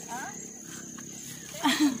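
Insects droning on one steady high pitch, with brief speech just after the start and a louder word near the end.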